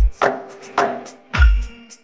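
DJ remix beat: three sharp percussion hits about half a second apart over held synth tones, the third landing with a deep bass boom, then a sudden brief drop-out.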